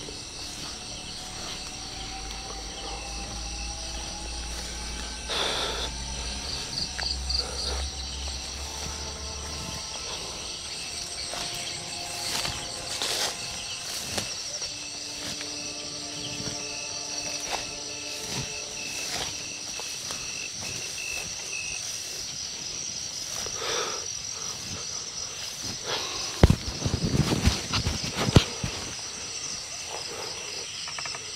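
Steady night chorus of crickets and other insects, a high pulsing trill. Near the end come several louder rustles and steps through undergrowth.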